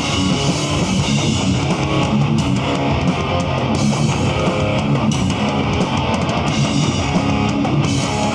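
Hardcore band playing live: distorted electric guitars and bass over a drum kit, loud and continuous.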